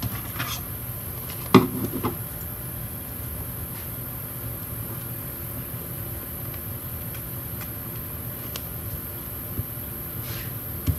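A sharp knock and a lighter tap about a second and a half in, then small scissors snipping sticker paper with a few faint clicks in the second half, over a steady low hum.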